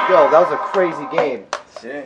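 A person's voice making short vocal sounds with wide swings up and down in pitch, with pauses between them and no music behind. There is a sharp click about one and a half seconds in.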